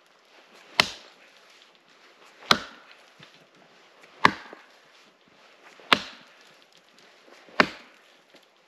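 An axe chopping into a frozen fallen tree trunk: five hard, sharp strikes about every second and a half to two seconds.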